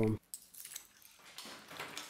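Cooked whelk shells faintly clicking and rattling against each other in a plastic bowl as they are handled and picked over by hand.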